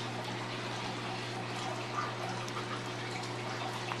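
Steady background noise in a small room: an even hiss with a low, constant hum underneath, and no distinct events.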